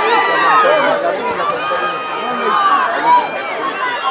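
Many overlapping voices of young rugby players and spectators shouting and calling out during play, with no single clear speaker; one shout stands out a little after three seconds in.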